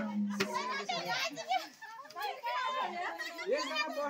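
Dance music with a steady drone and percussion strokes stops right at the start; then a crowd of women's and children's voices talk and call out over one another.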